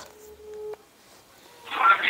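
A single steady telephone tone from a mobile phone's speaker, held for a little over half a second and then cut off; a voice comes on over the line near the end.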